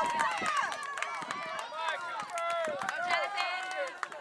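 Several spectators shouting and cheering at the same time, their high-pitched calls overlapping, a step quieter after a loud shout of encouragement ends at the start.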